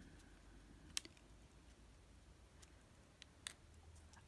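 Near silence with a low room hum, broken by a few faint clicks of fingers and nails handling a sticker sheet, the clearest about a second in and another near the end.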